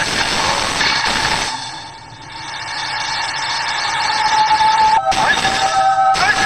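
Anime soundtrack sound effect: a loud rushing noise that fades about two seconds in and swells back up, with steady high tones coming in near the end.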